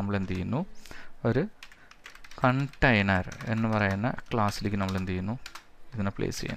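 Computer keyboard keys tapped in short quick runs between stretches of a man talking, the voice being the louder sound.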